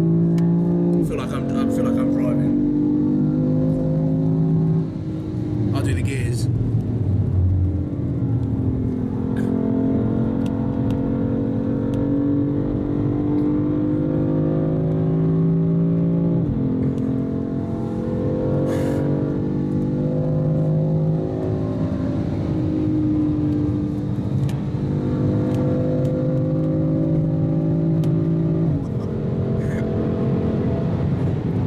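BMW engine heard from inside the cabin on a fast lap, pulling hard with its pitch climbing steadily and dropping sharply at each upshift: about a second in, around 17 seconds in and near the end.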